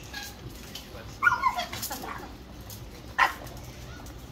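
A French bulldog giving short barking calls: a loud one with falling pitch a little over a second in, a few weaker ones after it, and a single sharp bark about three seconds in.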